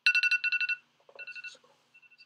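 Electronic alert tone going off suddenly: a quick run of two-pitch beeps, about eight a second, then a shorter, quieter run after a brief pause, loud enough to startle.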